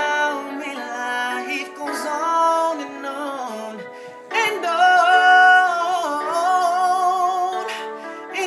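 Male voice singing a soulful R&B passage without clear words: quick melismatic runs, then from about halfway a louder stretch of long held notes with vibrato. Recorded on a phone microphone, so it sounds thin, with no bass.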